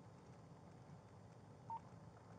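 Near silence with a low steady hum, broken near the end by one short electronic beep.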